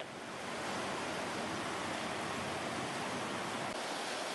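Steady rushing of turbulent water pumped out by a flood-control pump station into its concrete channel.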